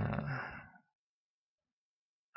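A man's short voiced sigh, breathy and fading out within the first second, then complete silence.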